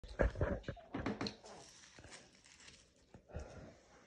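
Small chihuahua-type dog vocalizing in a few short, loud bursts in the first second and a half, with one more about three and a half seconds in: begging for food.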